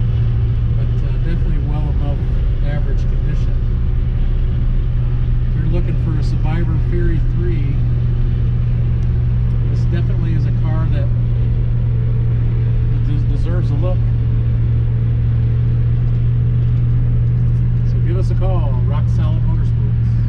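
1967 Plymouth Fury III driving at a steady cruise, heard from inside the cabin: a loud, even low engine and road drone that holds one pitch throughout. A voice is heard briefly every few seconds over it.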